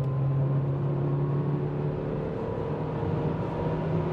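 Chery Tiggo 7 Pro SUV accelerating hard in sport mode from about 100 km/h toward 140 km/h, heard inside the cabin: a steady engine drone climbing slowly in pitch over tyre and wind noise.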